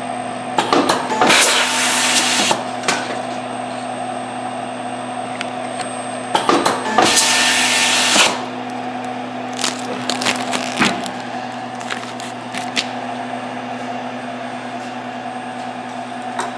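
Zebra 110PAX4 label printer with an LSI 20-71 tamp-down applicator cycling: a steady machine hum with scattered clicks, and two loud bursts of rustling noise about a second long, the first near the start and the second about seven seconds in.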